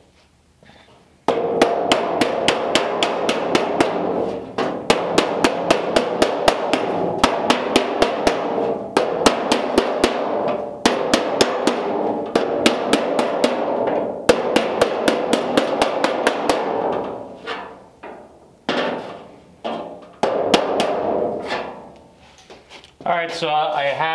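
Steel body hammer striking the flange of a steel reproduction door skin on a Ford Model A door in quick strokes, several blows a second, with the sheet metal ringing. The strokes fold the edge over past 90 degrees to start the hem. The steady hammering stops after about 17 seconds and a few separate blows follow.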